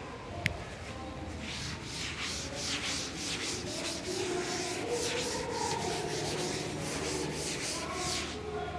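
Blackboard duster wiping chalk off a chalkboard in repeated rubbing strokes, about three a second, starting about a second and a half in. A single short click comes just before, about half a second in.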